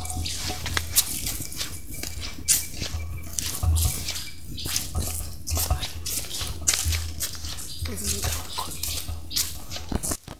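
Footsteps on a dirt path, short scuffs about every half second to second as someone walks, over a low rumble on the microphone.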